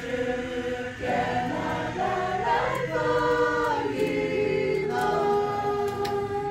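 A group of voices singing together in several parts, long held notes moving from pitch to pitch like a choir.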